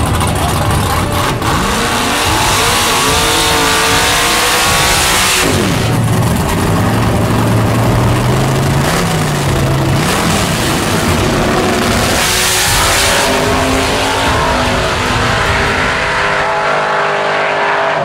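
A naturally aspirated small-block V8 drag-racing pickup revving hard. The engine pitch climbs several times, then holds high with a brief blip before fading near the end.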